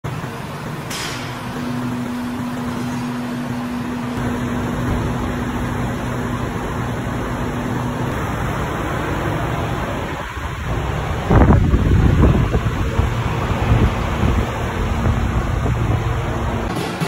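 A car running at low speed with steady mechanical noise. A faint steady hum fades out about eight seconds in, and a louder, low rumble starts about eleven seconds in.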